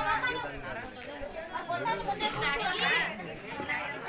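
Chatter of several people talking in a small crowd, voices overlapping.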